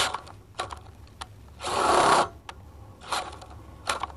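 Power drill run in short bursts with clicks and knocks between, the longest burst about a second and a half in and a shorter one near three seconds. The bit is snagging as it breaks through metal.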